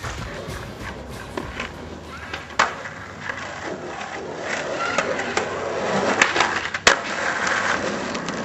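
Skateboard wheels rolling on rough asphalt, with the sharp clack of the board on the ground: one clack a few seconds in, then two close together near the end, the second the loudest. The rolling grows louder in the second half.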